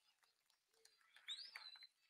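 Near silence, broken by one faint, brief, high chirp-like whistle that rises and then falls about one and a half seconds in.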